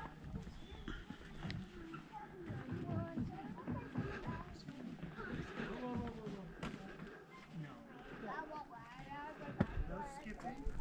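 Faint voices of people talking a little way off, with a few light thumps of footsteps on the paved path.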